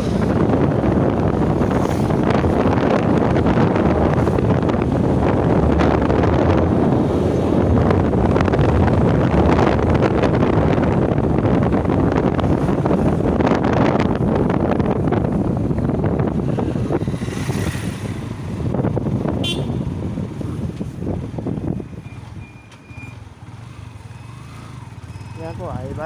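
Wind rushing over the microphone with road and engine noise from a moving motorcycle. The noise eases off about 22 s in as the bike slows. A short horn toot sounds about 19 s in.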